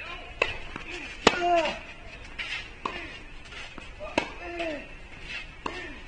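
Tennis rally: racket strikes on the ball about every one and a half seconds, with fainter ball bounces between. After every second strike one player lets out a short grunt that falls in pitch.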